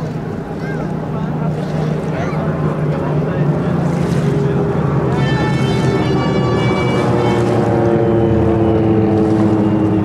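Vintage propeller aircraft's piston engine droning overhead. It grows louder through the second half, with a higher whine joining about halfway in as the plane comes closer.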